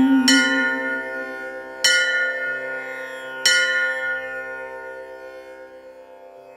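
Three bell strikes about a second and a half apart, each ringing on over a sustained musical tone, the whole fading away.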